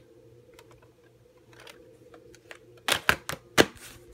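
Plastic clatter of a VHS cassette being handled and put into its plastic clamshell case: a few faint clicks, then four or five sharp clacks in quick succession about three seconds in as the case is snapped shut.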